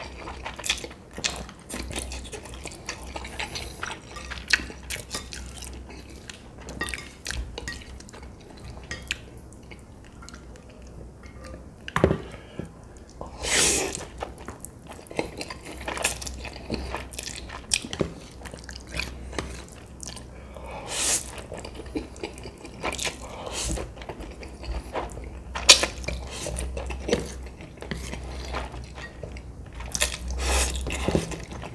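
Close-miked eating of saucy instant noodles: wet slurps as noodle strands are sucked in, chewing, and frequent small clicks of chopsticks against a plate. Louder slurps come about 13 seconds in and again about 21 seconds in.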